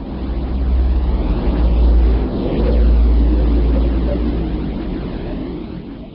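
A deep, noisy drone with a hiss above it, swelling in over the first second and fading near the end: an electromagnetic space recording converted into audible sound, presented as the sound of planet Earth.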